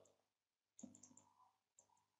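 Near silence, with a few faint computer mouse clicks: one a little under a second in and a couple more near the end.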